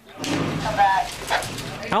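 Indistinct shouting voices over a rough, noisy field sound, with a short strained cry about half a second to a second in.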